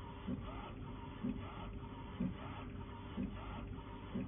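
UV flatbed printer printing a mug on its rotary attachment: a steady running noise with a short pulse about once a second.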